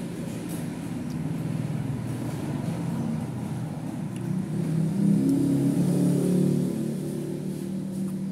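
A motor vehicle engine running close by over a steady low hum of traffic. It grows louder and rises in pitch about five seconds in, then eases off.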